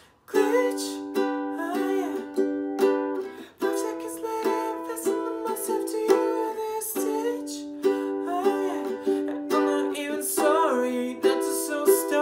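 Acoustic ukulele strummed in chords. It comes in suddenly a moment in, after a near-silent break, then keeps a steady strumming rhythm.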